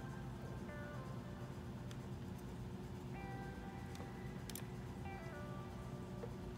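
Soft background music of held notes that change every couple of seconds, with a few faint clicks.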